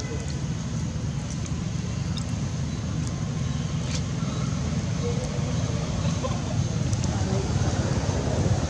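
Steady low rumble of outdoor background noise, with a few faint sharp ticks.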